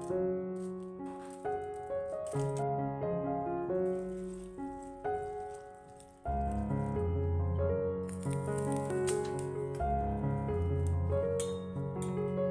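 Gentle piano background music, growing fuller with a deeper bass part about halfway through. In the first few seconds, faint crisp snips and rattles of dried red chilies being cut with scissors into a steel pot.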